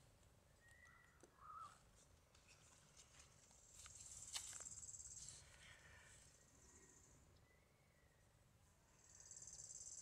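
Near silence: faint outdoor ambience with a few faint, short chirps and a brief faint high hiss near the middle.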